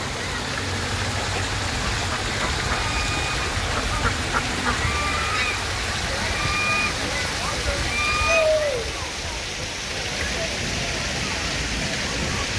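Steady rush of water from an artificial rock waterfall trickling into a pond, with a few faint short high calls over it in the middle.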